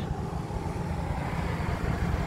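Wind buffeting the phone's microphone, an unsteady low rumble, over a faint steady hiss of road traffic.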